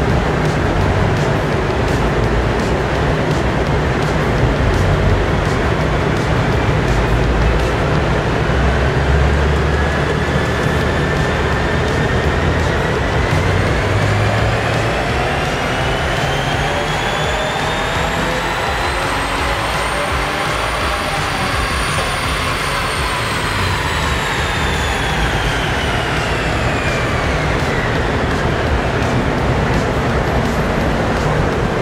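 2022 Subaru WRX's turbocharged 2.4-litre flat-four engine making a pull on a chassis dyno. A whine climbs steadily in pitch for about fifteen seconds, peaks a little past twenty seconds in, then falls away as the car winds back down.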